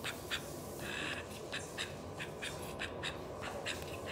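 Call duck giving a quick run of short quacks, about three or four a second, with one longer quack about a second in.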